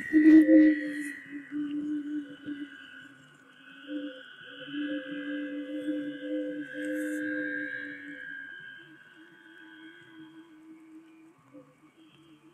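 Wind-blown gourd organs and gourd aeolian harp sounding together: a low held tone with higher held tones above it, swelling in the middle and fading toward the end as the wind varies. Wind buffets the microphone in the first second.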